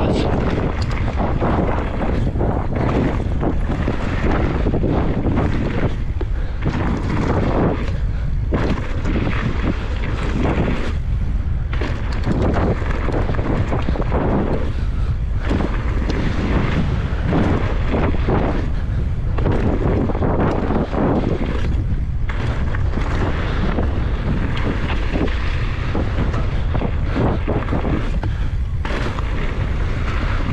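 Wind buffeting the microphone of a mountain bike's action camera, over the crunch and rattle of knobby tyres rolling fast over a loose gravel trail. The rumble is steady and loud, with constant uneven rattling on top.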